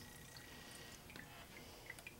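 Near silence, with a few faint drips and light clicks as a steel ladle dips into melted butter in a plastic measuring pitcher.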